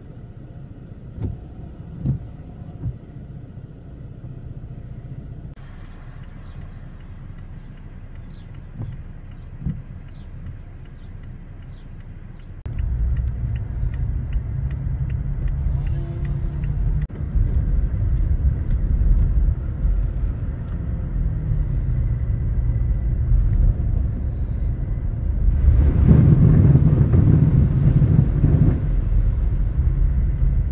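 Car driving on wet pavement, heard from inside the cab: a steady low rumble of engine and tyre noise with a few light knocks early on. It gets much louder suddenly about 13 seconds in, and louder again near the end.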